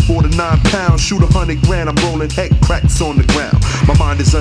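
Hip-hop track: a drum beat of regular hits over a deep, sustained bass line, with a vocal in a rapping cadence on top.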